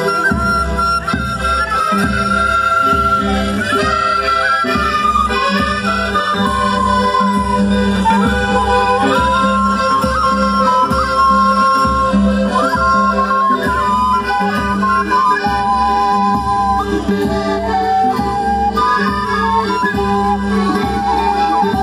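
Traditional Andean festival dance music: a held, wavering reed-like melody, accordion-like, over a steady drone and an even low drum beat.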